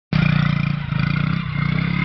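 A motor vehicle engine running at a steady speed, its low hum holding pitch throughout.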